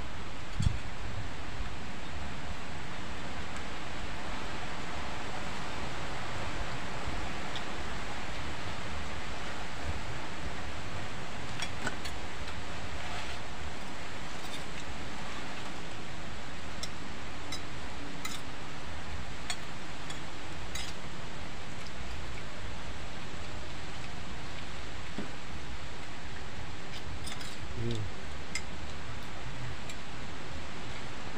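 Steady outdoor background hiss, with a short knock near the start and scattered light clinks of spoons against plates as two people eat.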